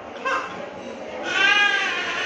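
A person crying: a short sob near the start, then a drawn-out, wavering wail that begins just past a second in and carries on.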